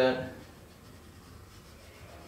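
Pencil strokes scratching faintly on drawing paper.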